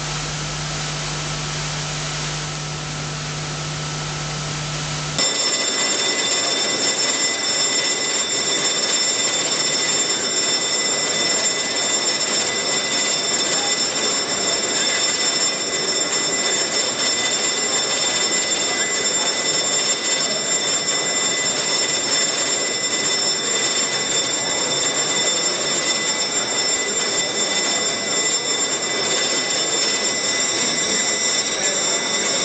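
An electric bell ringing continuously. It starts suddenly about five seconds in over a low hum of the hall, as the chamber bell rings to call members to their seats before the sitting.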